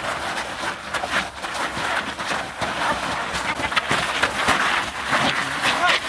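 Several people wrestling on a dirt ground: a steady scuffle of shuffling, scraping feet and clothing, broken by many short knocks and scrapes as bodies push and grab.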